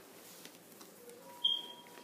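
Quiet room tone broken by one brief, high-pitched squeak about one and a half seconds in.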